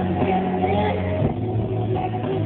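Live pop concert music recorded on a phone: heavy sustained bass notes, shifting to a new note about a second in, with a wavering melody line over them. The sound is muddy and bass-heavy.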